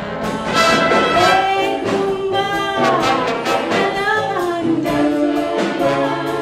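Live big band playing a mambo, brass section of trumpets and trombones to the fore over a steady beat.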